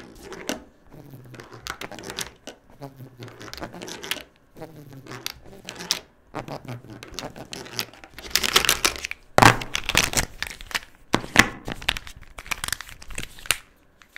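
Plastic felt-tip markers clicking and clattering as hands pick them up off paper and gather them into bundles, with a burst of louder rubbing and rattling of the markers about eight to ten seconds in.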